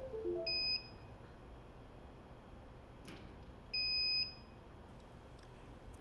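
Electronic beeper sounding two short, steady high-pitched beeps about three seconds apart, with a quick run of falling tones at the very start.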